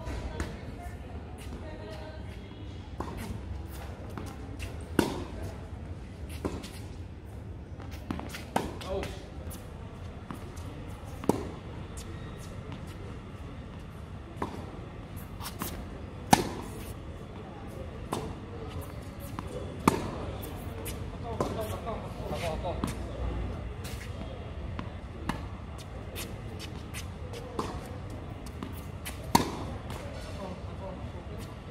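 Tennis balls struck by racquets in a rally on a hard court: sharp pops every few seconds, the loudest about halfway through, with fainter clicks of the ball bouncing and of strokes from the far end between them.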